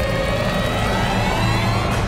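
Trailer sound design: a rising, siren-like tone that climbs slowly in pitch across the two seconds, over a steady low rumble. It builds tension into a reveal.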